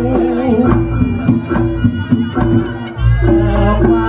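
Reog Ponorogo gamelan ensemble playing: a wavering wind melody over drum strokes and steady ringing gong tones, with a deep gong note swelling in about three seconds in.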